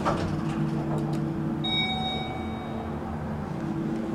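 Elevator direction chime sounding once, a single bell-like electronic tone about one and a half seconds in that rings for about a second over a steady low hum. One chime here signals down, which is backwards from the usual convention.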